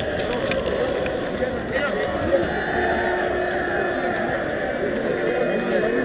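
Many people talking at once: indistinct, overlapping voices of a crowd, with no one speaker standing out.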